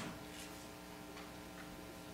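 Quiet room tone with a steady electrical hum and three faint, short clicks spread through it.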